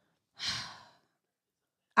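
A single breath into a close microphone, a short sigh of about half a second starting just under half a second in and fading away.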